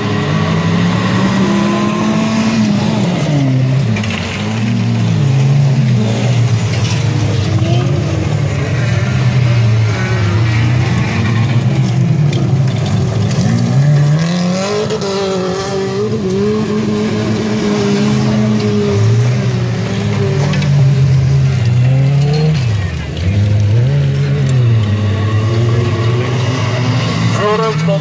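Several stock-car engines racing together on a dirt track, their notes overlapping and repeatedly rising and falling as the cars accelerate down the straight and lift for the corners.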